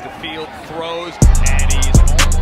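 Hip hop backing music with a vocal line: the beat drops out for about the first second, leaving the voice over a thin backing, then the bass and kick drum come back in hard about 1.2 s in.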